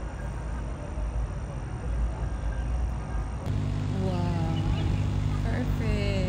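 Outdoor city background with a steady low rumble, like distant traffic, and faint voices. About three and a half seconds in the sound changes to a steady, louder low engine-like hum, with people talking nearby over it.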